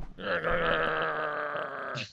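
A man's drawn-out, steady-pitched vocal noise, held for nearly two seconds with a slight waver and cut off sharply at the end.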